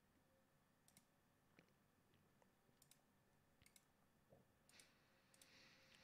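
Near silence with a dozen or so faint, scattered computer mouse clicks, irregularly spaced.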